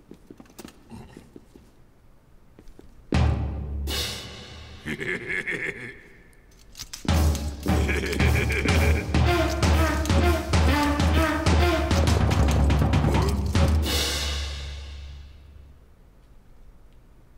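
Cartoon percussion and brass played clumsily: a sudden loud crash with a deep drum thud about three seconds in that rings down, then a rapid, ragged run of bass-drum beats and clashing mixed with pitched horn notes, ending in a last crash that rings away.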